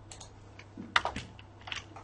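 Keystrokes on a computer keyboard: a short, irregular run of light key clicks as a line of R code is typed.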